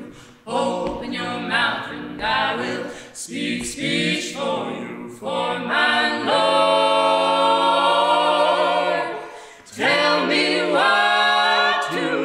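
Small mixed a cappella ensemble of two men and two women singing in close harmony: short rhythmic phrases, then a long held chord about halfway through, a brief break, and singing resumes near the end.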